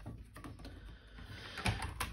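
Quiet handling sounds of card stock being lifted off a plastic stamp-positioning platform: faint rustles and a few light knocks, the clearest about one and a half seconds in.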